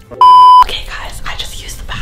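A single loud, steady electronic beep tone lasting under half a second, shortly after the start: a censor bleep edited into the soundtrack. A woman's voice follows it.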